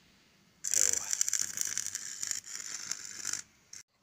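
A loud, dense rustling and crackling noise starting about half a second in and lasting close to three seconds, then dropping away.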